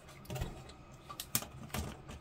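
Hard plastic model-kit sprues being handled and set down on a tabletop: a handful of light clicks and taps.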